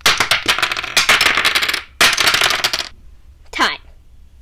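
Wooden dominoes clattering as they topple and knock together on a table, in two rapid runs of clicks about a second long each. A short voice-like sound falling in pitch follows near the end.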